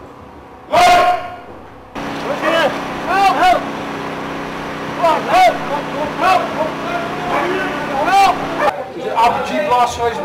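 Role-players in a training exercise shouting and crying out in short, repeated calls, with one loud cry about a second in, over a steady engine hum.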